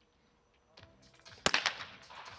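A single shot from a competition trap shotgun, over-and-under, about one and a half seconds in, sharp and loud, with a short echo trailing after it.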